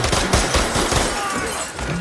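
Rapid gunfire from a film's action-scene soundtrack, many shots packed closely together in a sustained volley.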